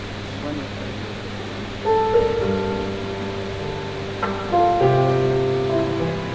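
A low steady hum, then about two seconds in a keyboard starts playing slow, held chords that change a few times.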